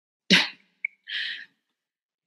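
A person sneezes once, then takes a short breath.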